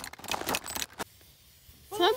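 Aerosol spray-paint can being shaken: the mixing ball rattles in a quick run of sharp metallic clicks for about a second.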